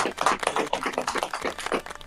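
Hands clapping in applause: a fast, irregular run of sharp claps.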